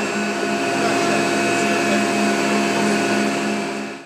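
Gas-fired boiler-house machinery running: a loud, steady drone with several constant hum tones. It fades out at the very end.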